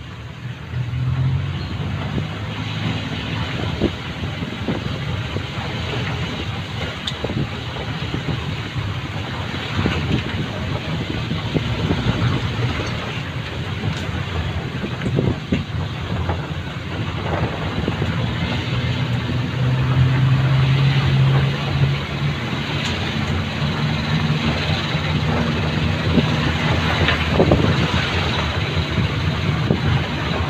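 Golf cart driving along a paved path, heard from inside: a steady low hum from its motor under road and body noise, with a few small clicks and knocks. The hum grows louder for a few seconds past the middle.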